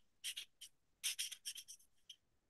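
Marker pen writing on paper on a clipboard: faint, short, high scratchy strokes, a few just after the start and then a longer run in the second half, as the letters are drawn.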